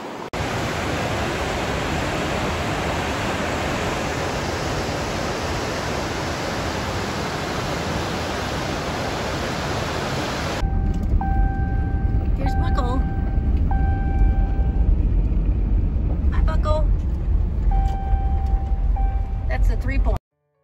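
Whitewater on the Deschutes River rushing over a rocky cascade: a loud, steady rush of water. About halfway through it gives way to the low, steady rumble of a vehicle driving, heard from inside the cab, with a few short chirps and whistles over it.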